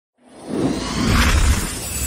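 Cinematic logo-intro sound effect: a swelling whoosh with a deep rumble underneath and a glittery, shattering high shimmer. It builds from silence, peaks about a second and a half in, then begins to ease off.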